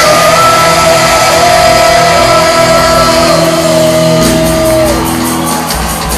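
Live rock band playing loud through a hall's PA, recorded from the crowd. A long held note rings out and slides down about five seconds in, and fast cymbal-like hits fill the last couple of seconds.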